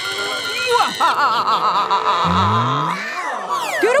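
A long, wavering, frightened cry from children, over background music, with a rising swoop effect in the second half.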